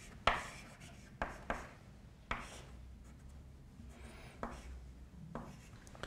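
Chalk on a blackboard: a few short, sharp strokes and taps as a box and lines are drawn, most of them in the first two seconds or so, with fainter ones later.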